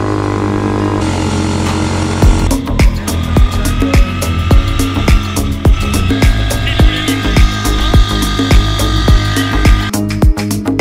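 Background music: held chords, then a steady drum beat comes in about two seconds in, at about two beats a second.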